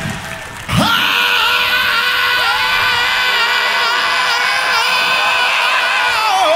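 A voice through the PA holding one long, high yelled note that wavers slightly, starting about a second in just after the band's music cuts off and lasting about five seconds.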